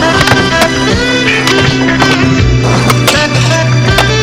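A song with a held low bass note and a wavering melodic line plays throughout. Skateboard sounds are mixed in: wheels rolling on concrete and a few sharp board clacks.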